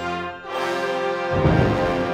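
Concert wind band playing sustained, brass-heavy chords. After a short dip about half a second in, a new chord enters. About a second and a half in, a sudden loud accent hits in the low end under the full band.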